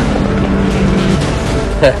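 Prototype race car engine running at speed on track, with a man's short laugh at the very end.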